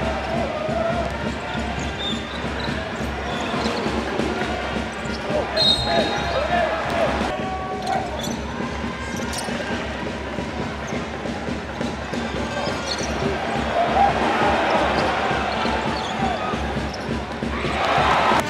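Live game sound of a basketball being dribbled on a hardwood court, with voices from the arena throughout.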